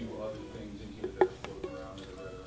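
Marker pen writing on a guitar's lacquered body, with a few light clicks of the pen tip against the finish about a second in.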